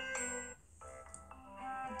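Soft background music of held, ringing notes, fading almost away about half a second in and coming back softly near the end.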